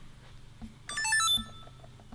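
Sony FDR-X3000 action camera's power-on chime: a quick run of short electronic beeps stepping in pitch, about a second in, lasting half a second. It marks the camera switching on and starting to record.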